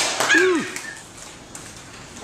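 A short voiced exclamation, a brief call falling in pitch about half a second in, after a sharp click at the start; then quieter room noise.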